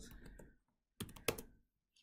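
Computer keyboard being typed on: two sharp key clicks about a second in, then a few faint taps.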